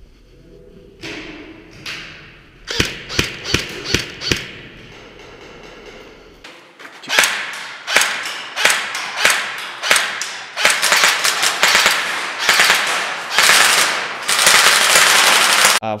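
Airsoft guns firing in a concrete indoor hall: single shots about three a second, then from about seven seconds in a dense stretch of rapid firing and hits ringing in the hall, with players' voices among them.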